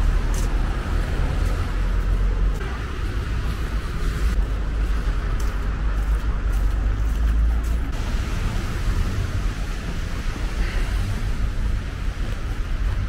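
City street traffic: cars running on the road alongside, a steady deep rumble, with a few faint short crunches of footsteps on snow.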